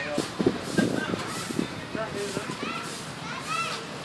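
Background chatter of visitors' voices, with a few short high-pitched calls that sound like children, but no clear words.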